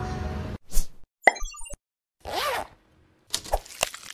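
Cartoon sound effects for an animated title card: a short whoosh, a sharp pop with quick high blips, a swoosh with a tone that rises and falls, then a few quick clicks near the end.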